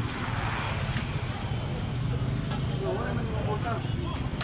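A steady low hum runs throughout, with faint voices in the background near the end.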